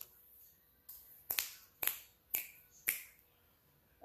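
Finger snapping: a faint click, then four sharp snaps in an even rhythm about half a second apart.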